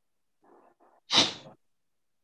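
A sneeze: two short, faint catching breaths, then one loud, sharp sneeze about a second in.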